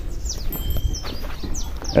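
Small birds chirping: a scatter of short, quick, downward-sweeping chirps and one brief steady whistle, over a steady low rumble.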